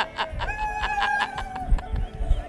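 A person's voice: the tail of laughter, then one long high held call, dipping slightly in pitch at its end.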